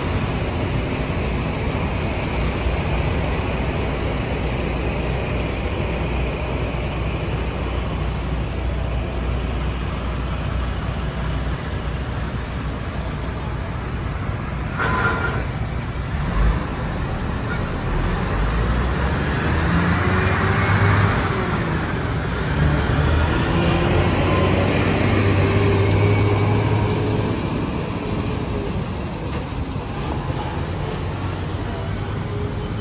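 City street traffic: cars, vans and trucks rumbling past a signalled intersection. About two-thirds in, heavier vehicles pull away, their engine notes rising and falling as they pass, and the traffic is loudest then.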